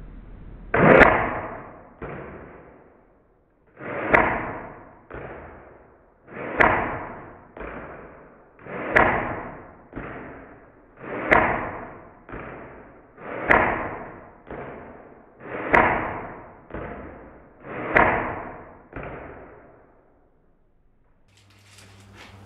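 CYMA MP5 airsoft electric gun firing eight single shots, about one every two and a half seconds. Each sharp crack trails off over about a second and is followed by a fainter second knock.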